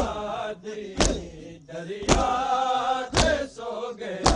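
A group of men chanting a mournful Punjabi refrain in unison, punctuated about once a second by a loud collective strike of hands on chests, as in matam.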